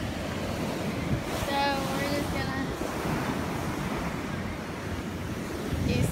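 Steady noise of surf on a beach mixed with wind buffeting the microphone. A voice is heard briefly about a second and a half in.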